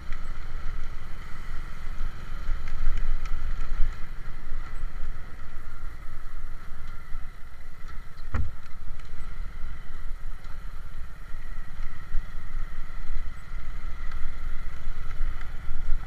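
Small motorcycle engine running steadily while riding over cobblestones, with a constant high whine over a low rumble and one sharp knock about eight seconds in. The rider says the bike's worn chain-and-sprocket set is binding badly and making it stutter.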